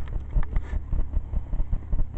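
A steady low mechanical rumble with a few faint clicks.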